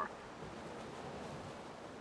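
A steady, even rushing noise with no distinct events in it.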